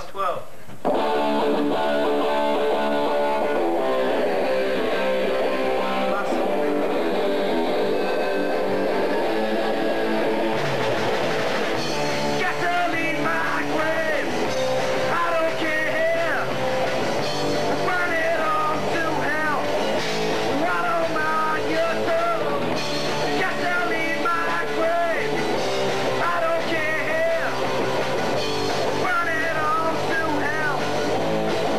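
Amateur rock band playing live: electric guitar chords start abruptly about a second in, bass and drums fill in around ten to twelve seconds, and a singer comes in shortly after.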